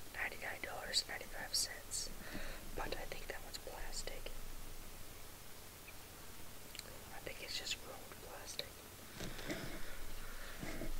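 A person whispering in a soft, breathy voice, with crisp 's' sounds.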